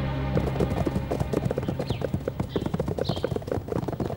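Hooves of several horses clip-clopping fast on hard ground, starting about a third of a second in, over background score music.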